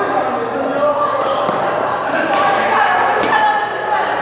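Several people talking at once, echoing in a large sports hall, with two sharp racket-on-shuttlecock hits about two and three seconds in.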